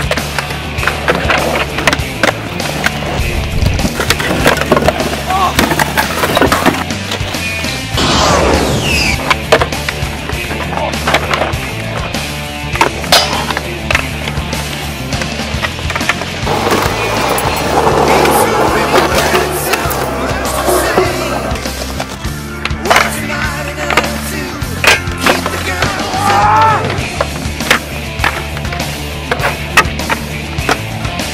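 Skateboards on concrete: wheels rolling, tails popping and boards clacking down on landings and slams, with grinds and slides on ledges and coping. These sharp knocks come again and again over background music with a steady bass line.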